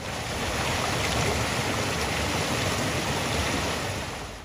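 Steady rush of water flowing along a narrow stone-lined channel.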